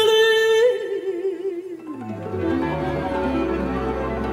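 A Romani song performed live by an opera singer with a Hungarian gypsy string orchestra. A long held high note breaks off about 0.7 s in, and a quieter solo line with wide vibrato winds downward and slides low. The strings and bass come back in together at about two seconds.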